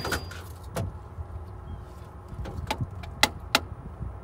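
Steady low hum of the running rooftop dehumidifier unit, with about half a dozen sharp clicks and taps of handling at the electrical panel spread through it.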